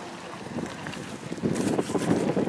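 Wind gusting across the microphone, stronger about one and a half seconds in, with the thin paper of a sketchbook page rustling as it is handled and turned.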